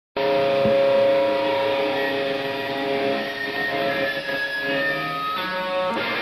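Rock band playing live: held, ringing electric guitar tones that start abruptly, change pitch about five seconds in, and lead straight into strummed guitar.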